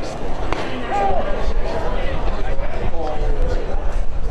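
A thrown baseball smacking into a catcher's mitt once, sharply, about half a second in, followed by voices on the field.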